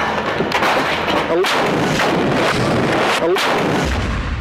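Battlefield gunfire and explosions: a loud, continuous din of shots and blasts, with several sharp reports standing out.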